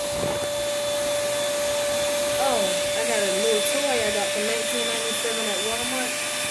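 A corded vacuum cleaner running steadily: an even rush of suction with a constant motor tone.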